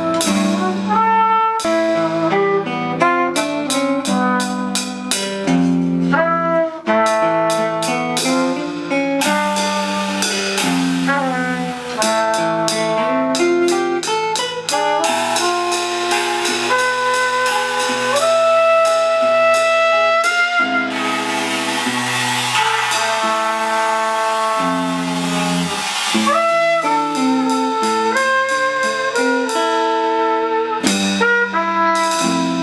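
Live jazz trio playing: a cornet plays a melody over an archtop electric guitar and a drum kit played with sticks.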